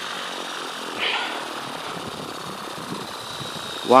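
Align T-Rex 600E Pro electric RC helicopter sitting on its landing pad with the main rotor still turning after landing: steady rotor and drivetrain noise with a thin, steady high whine.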